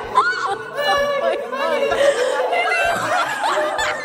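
People laughing and shrieking in excited voices without clear words, with a sharp loud cry just after the start.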